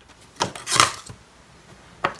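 A sharp click, then a brief rustle: the flexible iFlex current-probe cable being picked up and moved over the bench.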